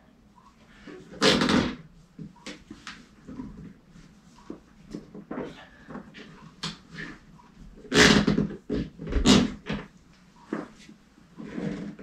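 Stiff plastic sleeve being forced along a paramotor cage's titanium hoop bar, a tight fit eased with silicone spray. Scattered rubs and knocks, with a few louder bursts about a second in and again around eight and nine seconds in.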